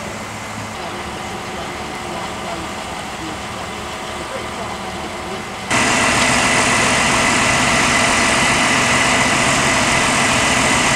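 Fire engines' diesel engines idling steadily. A little over halfway through, the sound jumps suddenly louder to a denser engine noise carrying a steady high-pitched whine.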